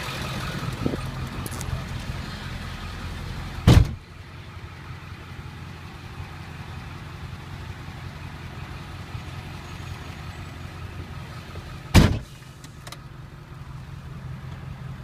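Ford F-350's 7.3-litre Power Stroke turbo-diesel with straight-piped exhaust, idling with a steady low drone. A truck door slams shut about four seconds in and another near the end; after each slam the idle sounds more muffled, as heard from inside the closed cab.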